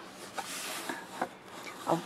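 A cardboard shipping box lid being lifted open: a soft scraping rustle of cardboard with a few light taps.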